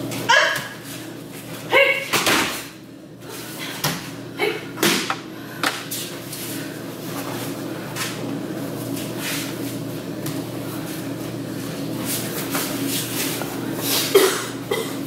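Aikido sword-taking practice on tatami mats, with brief voiced sounds and sharp thuds and rustles of falls and footwork near the start and in the first six seconds or so, over a steady low hum.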